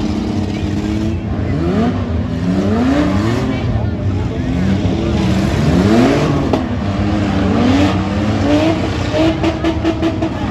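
Several minivan engines revving hard at once, their pitch rising and falling again and again as they accelerate and back off in a demolition derby. A few sharp knocks come near the end.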